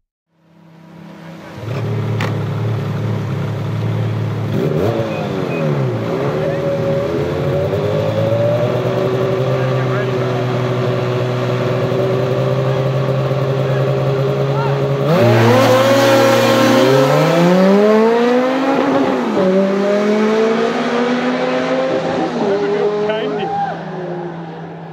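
A Ferrari F430 Spider's V8 and a snowmobile engine idling side by side, revved briefly about five seconds in. Both launch together about fifteen seconds in with a sudden burst of noise, then the engines climb in pitch through several gear changes and fade as they pull away.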